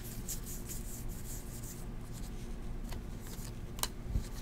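A stack of Bowman Draft baseball cards being flipped through by hand, with soft sliding rustles and light clicks as each card is moved along. There is one sharper click near the end.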